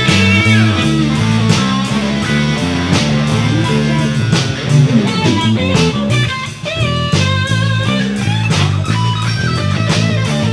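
Live rock band playing an instrumental passage: electric lead guitar with wavering, bent notes over a stepping electric bass line, with regular hits about every second and a half.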